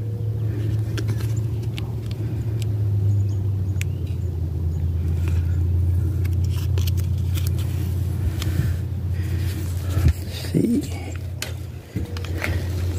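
A steady low mechanical rumble, like a motor running, with faint crackles from the backing being peeled off a vinyl sticker.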